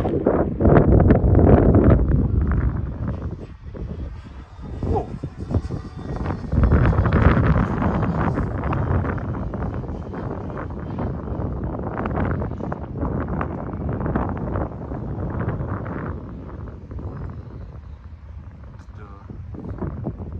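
Strong wind buffeting the microphone in gusts, loudest in the first couple of seconds and again about seven seconds in, easing toward the end. Under it, the motor of an RC model airplane flying overhead is faintly heard.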